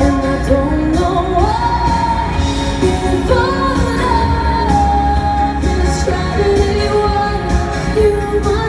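Live pop music played over a stadium PA and heard from the stands: a female singer holds long notes that slide up into the next note, over a band with a steady bass.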